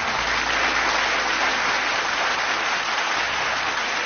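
Audience applauding: many hands clapping in a steady, even wash of sound.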